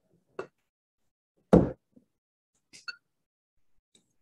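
Tea ware handled on a wooden table: a light tap, then one loud knock about a second and a half in as the ceramic matcha bowl (chawan) is set down, followed by a couple of small, faintly ringing clinks near three seconds.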